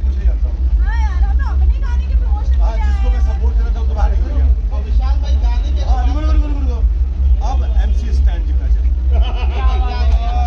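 A man's voice, with the chatter of a crowd behind it, over a loud steady low rumble.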